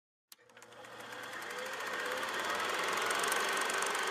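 Old cine film projector running: a fast, even mechanical clatter that starts with a click and fades in, growing louder.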